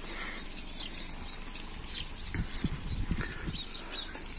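Soft footsteps on a wet dirt path, a few dull thumps in the second half, with faint bird chirps in the background.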